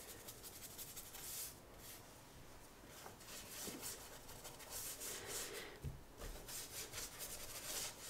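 Faint rubbing and scrubbing of paintbrush bristles on sketchbook paper and on Artgraf pigment blocks, in short uneven strokes.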